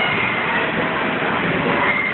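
Steady rushing noise of an inflatable bounce house's electric air blower running, with no breaks or impacts.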